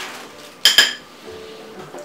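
Metal spoon clinking against a cereal bowl: two quick, ringing clinks close together a little past the half-second mark.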